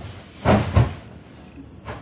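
A person jumping onto a king-size bed and landing on the mattress: two heavy thumps close together about half a second in, then a short knock near the end.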